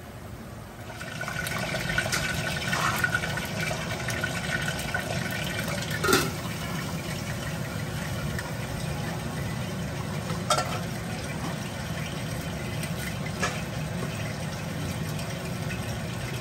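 Steady rush of running water that starts about a second in, with a few sharp knocks or clinks scattered through it.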